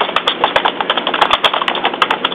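Rapid, irregular clicking over a steady low hum, heard through a phone line.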